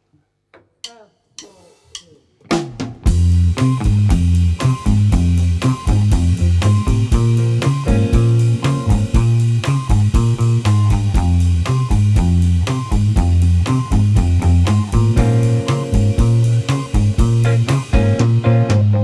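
A few quiet drumstick clicks counting in, then a reggae band starts up about two and a half seconds in and plays on: a loud, heavy bass line with electric guitar and a drum kit.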